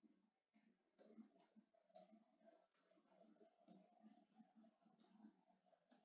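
Near silence with faint, sharp clicks, about eight of them at irregular intervals, made while pen strokes are drawn on a computer whiteboard.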